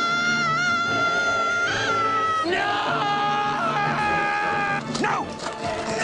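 A TV commercial's soundtrack: people screaming long, drawn-out "no" over background music, two held screams of about two seconds each.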